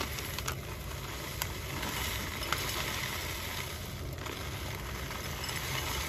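Dry granola poured from a plastic pouch into a glass bowl: a steady rattling trickle of flakes and clusters, with a few small clicks as pieces land.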